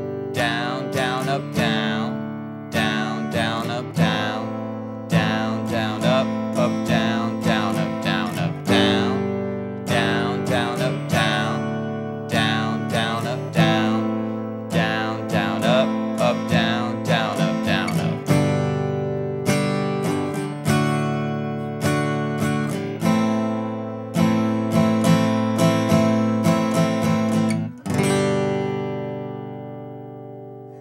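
Acoustic guitar strummed in a steady rhythm through a G, D and A minor chord progression. Near the end a last chord is struck and left to ring out, fading away.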